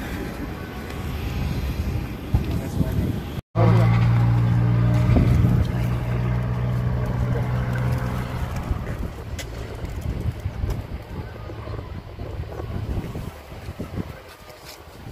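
A loud, steady low engine hum that starts abruptly about three and a half seconds in and fades away over the next five seconds.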